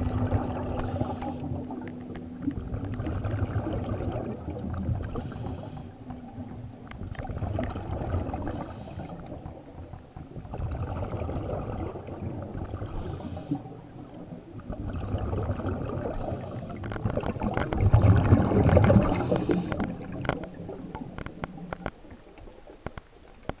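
Scuba diver breathing through a regulator underwater: a bubbly rush of exhaled air about every four seconds, with low gurgling water noise in between. The bubbling is loudest near the end.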